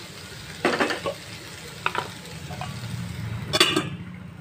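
Wooden spatula stirring and scraping onions and tomato frying in oil in a nonstick kadai, over a low, steady sizzle, with a few short scrapes and knocks. Near the end comes a louder metallic clatter as a steel lid is set on the pan.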